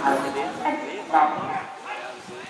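People's voices talking and calling out, with one louder call about a second in.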